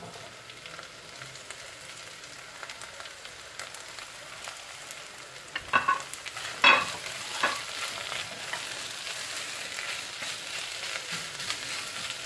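Oil sizzling steadily in a pot as sliced carrots and chopped green onion fry with onion and tomato paste. A few short clunks come about six to seven seconds in.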